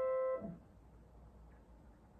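The held end of a major third played on a grand piano: two notes struck together keep sounding, then are cut off by the dampers about half a second in as the keys are released. Faint room tone follows.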